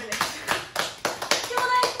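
A few people clapping their hands, a brisk, uneven run of several claps a second. A short voice sounds near the end.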